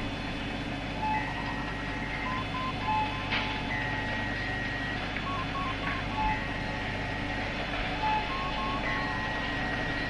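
Electronic sci-fi sound bed: a steady low hum under repeating bleeps, a held high tone followed by a few short lower blips, the pattern coming round about every two and a half seconds.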